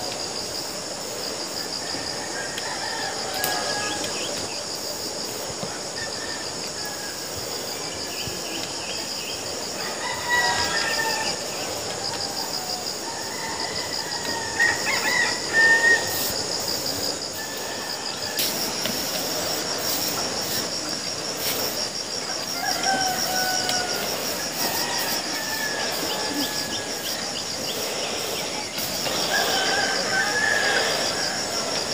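Insects buzzing steadily in a fast, even pulse, with birds calling over them, loudest about halfway through.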